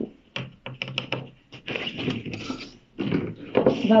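A few quick taps followed by a sliding, papery scrape: a picture card being pulled out of a wooden kamishibai frame to reveal the next illustration.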